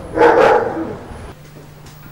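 A dog barking once, a single drawn-out bark, followed by a faint steady hum.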